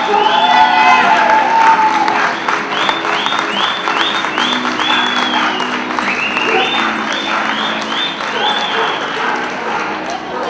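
Audience applauding steadily, with rhythmic music playing underneath.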